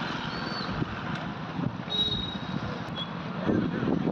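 Road traffic: motor vehicles running past, with a few short high-pitched tones about half a second, two seconds and three seconds in.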